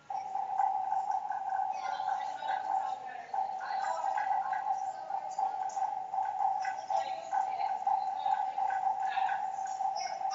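A single sustained note held at one steady pitch. It starts suddenly and breaks briefly about three seconds in, with voices chattering in the background.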